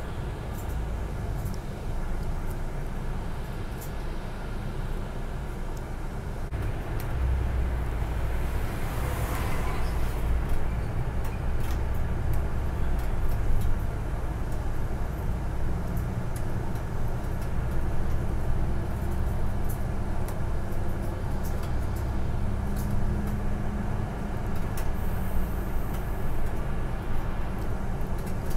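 Interior ride noise of a city bus driving along: steady engine and road rumble with faint rattles, growing a little louder after about seven seconds, with a brief hiss a couple of seconds later and a steady engine hum in the second half.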